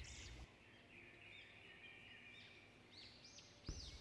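Near silence with a few faint bird chirps: short notes that rise and fall, most of them near the end.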